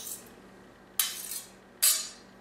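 A chef's knife scraping and clinking against metal utensils and a glass bowl, as chipotle paste is scraped off the blade into yogurt. There are two short scrapes, about a second in and near the end.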